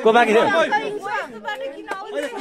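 Voices talking and calling out, several at once and loudest in the first half-second, with a short click near the end.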